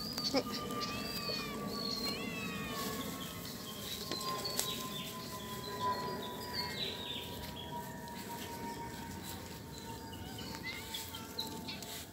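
Faint, short, high chirping calls come in quick runs, mostly in the first few seconds and again midway, over quiet outdoor background noise. A faint thin whine slowly falls in pitch underneath, with scattered light clicks.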